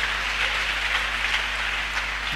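Congregation applauding, a steady sound of many hands clapping.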